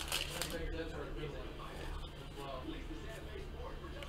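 Faint crinkling of a foil trading-card pack being opened by hand, with cards being handled.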